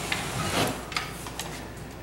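Drywall flat box on a pole handle being run along a ceiling butt joint: a soft scraping rub with a few light clicks, easing off toward the end.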